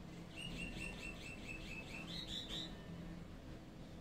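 A bird calling: a quick run of about ten evenly spaced chirps, the last few higher in pitch, over in under three seconds.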